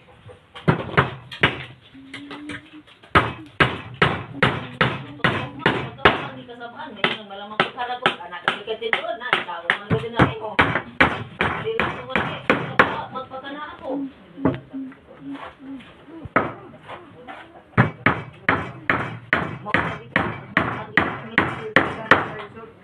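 Claw hammer driving nails into wooden bed boards: a steady run of sharp wood-and-metal blows, about two or three a second, with short pauses between nails.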